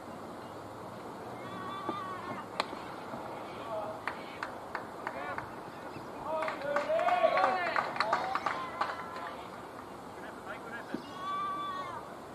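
Cricketers shouting to each other across the field while the batters run between the wickets. The calls are loudest and overlapping in the middle, with a few sharp claps or knocks before them.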